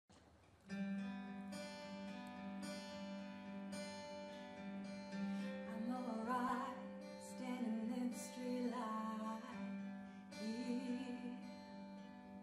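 Instrumental music with steady held chords, starting just under a second in. A woman's voice comes in over it in short phrases from about six seconds.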